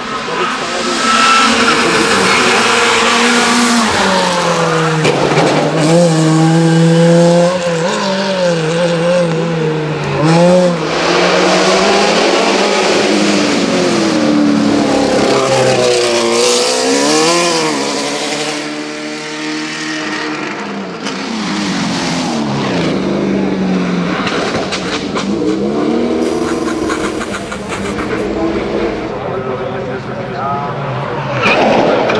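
Hillclimb racing cars running past one after another, engines revving hard, their pitch climbing and dropping again and again with each gear change.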